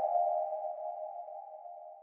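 A held ringing tone from the cartoon clip's soundtrack, a few close notes sounding together, fading steadily until it is almost gone by the end.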